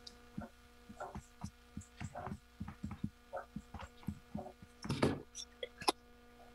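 Irregular soft clicks and knocks close to the microphone, a few a second, with the loudest cluster about five seconds in, over a steady electrical hum.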